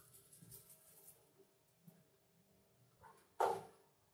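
Salt being poured onto sliced onions in an enamel pot: a faint, soft noise, with one short louder burst about three and a half seconds in.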